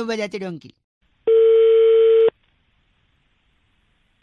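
The last words of a voice fade out, then a single steady telephone ringback tone sounds for about a second, heard down the phone line while an outgoing call rings.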